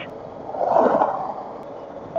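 Wind and road noise of a Suzuki V-Strom 1000 being ridden at road speed, a rushing sound that swells briefly about half a second in and then settles.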